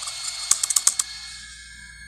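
Computer keyboard keys typed in a quick run of about six clicks about half a second in, over a steady, sustained music drone.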